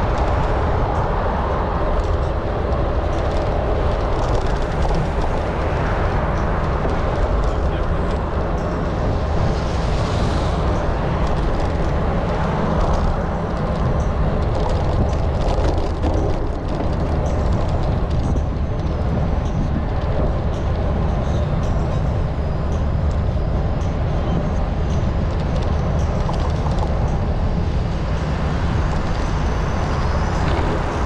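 Steady wind and riding noise on a GoPro HERO9 microphone carried on a moving bicycle, heavy in the low end.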